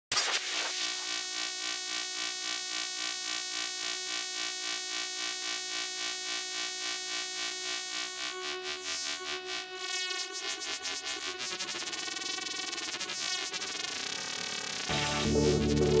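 Electronic music intro built on synthesizers: an evenly pulsing synth pattern, then sweeping tones that glide across one another. About a second before the end, a louder, bass-heavy full section comes in.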